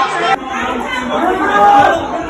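Several voices of a crowd talking over one another, with an abrupt change in the sound about a third of a second in.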